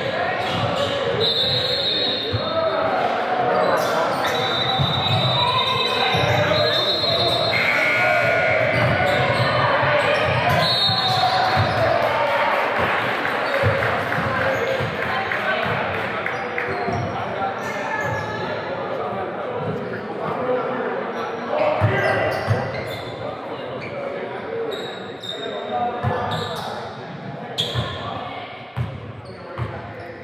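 Basketball game in a large gym: balls bouncing on the hardwood court amid indistinct shouting and chatter from players and spectators, echoing in the hall. The voices thin out in the last third, leaving separate thuds.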